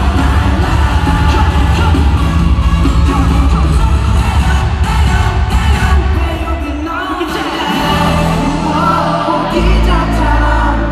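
Live K-pop group performance played loud over an arena sound system: a heavy bass beat under male group vocals. The bass drops out briefly about six and a half seconds in, then comes back.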